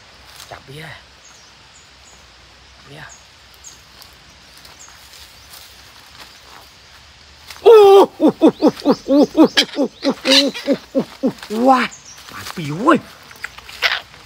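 Faint high chirps over a quiet forest background, then from about halfway through a loud, rapid series of hooting notes, about six a second, each bending in pitch, lasting about four seconds. A man's exclamations follow near the end.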